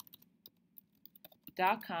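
Faint, irregular keystrokes on a computer keyboard as text is typed. A voice starts speaking about one and a half seconds in.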